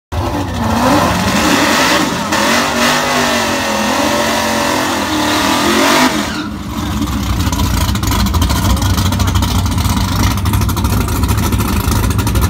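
Naturally aspirated Fox-body Mustang drag car doing a burnout: the engine is held high with its pitch wavering while the rear tyres spin. About six seconds in it abruptly drops back to a steady, rhythmic idle.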